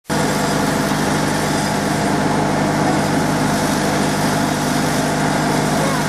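A loud, steady machine-like hum under a constant hiss, starting abruptly and holding unchanged throughout.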